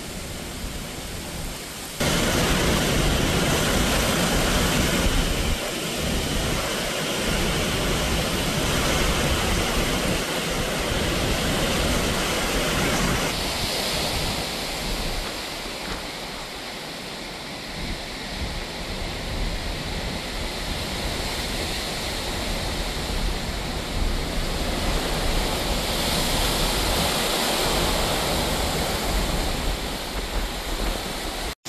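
Strong hurricane wind rushing and buffeting the microphone: a loud, steady noise with a deep rumble that jumps up about two seconds in, then eases and swells again in gusts.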